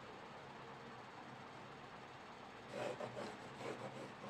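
Pencil drawing a line along a ruler on paper: faint scratching that starts about two and a half seconds in, over a low steady room hiss.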